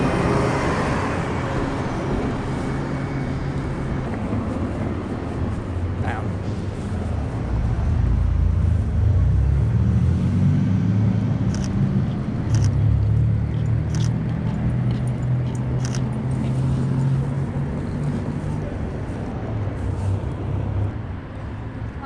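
Downtown street traffic, with a vehicle engine running low that rises in pitch about halfway through as it pulls away. A few sharp camera-shutter clicks come in the second half.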